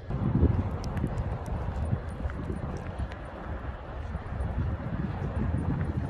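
Wind buffeting a handheld phone's microphone outdoors: an uneven low rumble.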